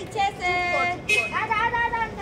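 High-pitched voices calling out in long, drawn-out cries, two held calls one after the other.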